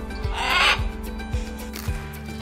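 A macaw gives one short call, about half a second long, shortly after the start. The call sits over background music with a steady beat.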